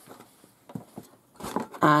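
Hands handling a folded terry towel on a cutting mat: a few soft taps and a brief rustle, with a woman starting to speak near the end.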